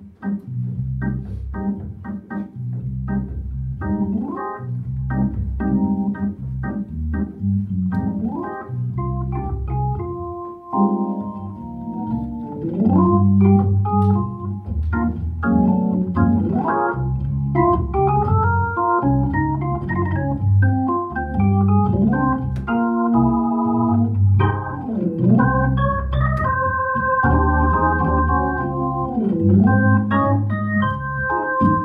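Hammond B3mk2 organ playing a bossa nova: a pulsing bass line under repeated chords, with a higher held-note melody coming in about ten seconds in.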